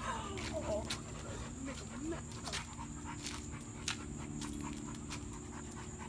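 Dogs panting during play, with scattered sharp clicks.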